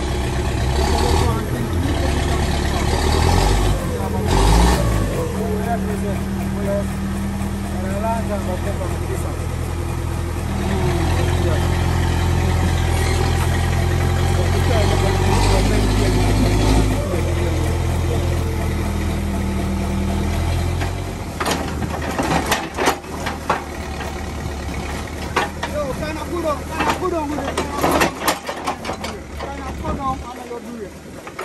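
Backhoe loader's diesel engine running loudly under load, its note stepping up and down as it revs while working stone. About twenty seconds in the engine drops lower and a run of sharp knocks and clatters follows.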